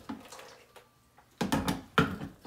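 Hard plastic clunks and knocks as the ice cream maker's freezer bowl is handled and set onto its base: a few sharp knocks with a low thud about a second and a half in, then one more click at the end.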